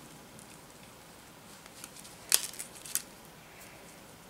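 Cross-stitch needle and floss being worked through Aida cloth by hand: light rustling with a few small sharp clicks, the sharpest a little past two seconds in and another near three seconds.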